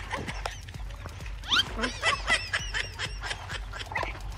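A quick run of short, high, animal-like squeaks with clicks between them, several a second, with a sharp rising squeal about a second and a half in.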